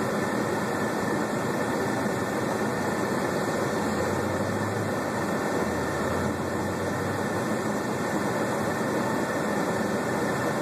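Semi truck's diesel engine idling, heard from inside the cab as a steady hum under a constant hiss. A deeper rumble swells in the middle as traffic crosses in front.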